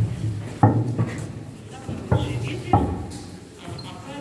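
Footsteps on stone flagstones as people walk: four low thuds, unevenly spaced, with voices murmuring in the background.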